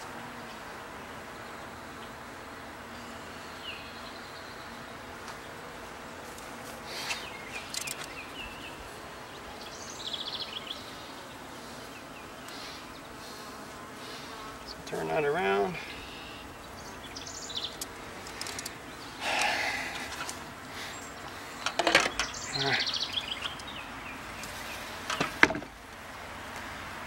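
Honeybees buzzing around an opened top-bar hive as a comb is lifted out, a steady hum throughout. Several short knocks and scrapes of the wooden top bars and comb being handled break through it.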